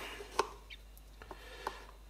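A few light clicks and taps, the loudest about half a second in, from a hand handling a plastic cup of bedding epoxy.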